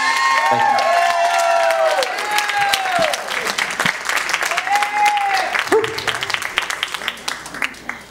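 Audience applauding at the end of a song, with voices calling out over the clapping; the applause fades toward the end.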